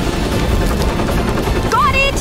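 Helicopter rotor noise, a steady low rumble as the helicopter hovers overhead, under background music.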